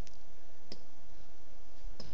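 Two light clicks about half a second apart, made while selecting a menu item on a computer, over a steady hiss.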